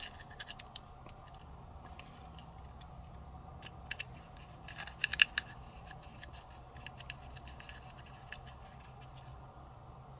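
Faint small clicks and scrapes of a pistol grip panel being seated on the frame and a hex key turning the grip screws, with a short cluster of sharper clicks about five seconds in.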